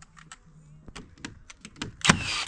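Scattered light clicks and taps of a cordless nail gun being handled and set against a wooden feather-edge fence board, over a faint steady low hum.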